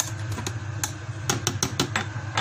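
Electric blender running with a steady low hum while chunks of coagulated pork blood knock against the jar in a quick, irregular run of sharp clicks.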